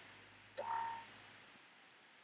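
A single sharp click about half a second in, followed by a brief, faint tone, over quiet room tone.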